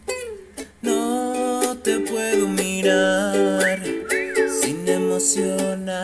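Soprano ukulele playing chords with a singing voice over it. The music nearly drops out at the start and comes back fully about a second in.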